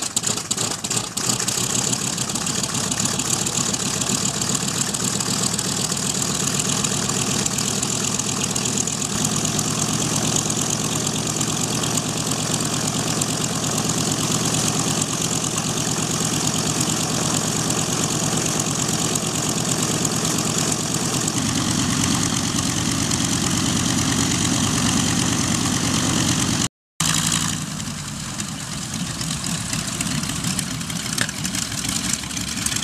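A B-25 Mitchell bomber's Wright R-2600 radial engines running steadily at ground idle. The sound shifts in character about nine and twenty-one seconds in, cuts out for a moment near the end, and comes back a little quieter.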